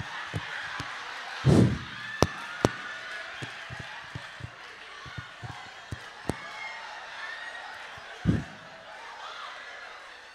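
Audience laughing and murmuring through a pause in a stand-up bit, with scattered sharp claps or clicks. Two heavy thumps stand out, one about a second and a half in and one near the end.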